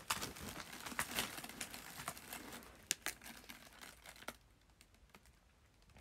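Crinkling and scattered sharp clicks of something being handled close to the microphone, dying away about four seconds in.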